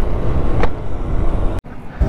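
Bajaj Dominar 400 motorcycle riding at road speed, heard as a steady rush of wind and engine noise, which cuts off abruptly about one and a half seconds in.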